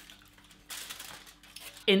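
Faint handling noises on a kitchen worktop, a brief rustle about a second in and small clinks, over a low steady hum.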